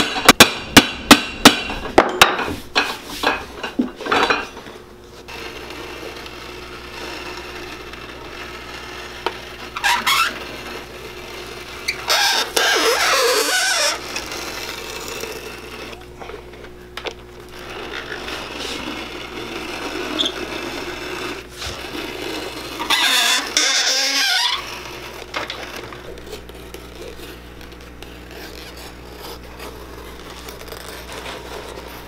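Cobbler's hammer striking a new leather sole onto a boot, about three sharp blows a second, fading out within the first few seconds. Several longer scraping bursts follow as the new sole is worked.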